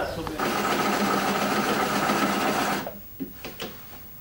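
Electric sewing machine running steadily for about two seconds of stitching, then stopping abruptly, followed by a few faint clicks.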